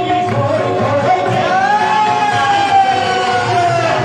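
Devotional kirtan singing with musical accompaniment. A voice holds one long note that falls slightly near the end.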